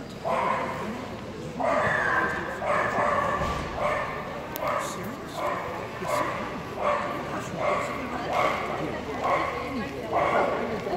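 A dog barking over and over, a short bark about every half second and still going at the end.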